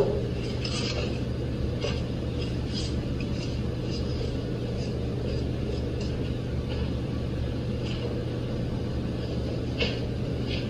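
A steady low hum with faint clinks and knocks of dishes being handled at a kitchen sink, roughly one a second, with a slightly louder knock near the end.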